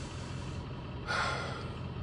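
Steady road and engine rumble inside a moving car's cabin, with one short breath out by the driver about a second in.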